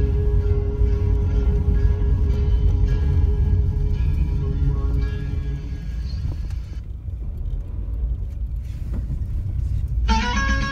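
Steady low rumble of a car driving slowly, under music whose long held note fades away over the first half; for the last few seconds mostly the car rumble remains.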